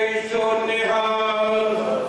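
A man chanting into a microphone over a PA system in long held notes, with short breaks between phrases, over a steady low tone.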